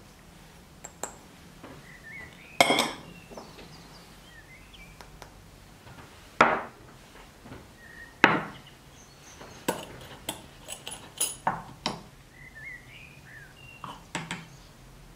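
Kitchen containers handled on a wooden board: three separate sharp knocks, then a quick run of ceramic and metal clicks and clinks as a ceramic jar's wire-clip lid is opened and a small spoon goes into the jar.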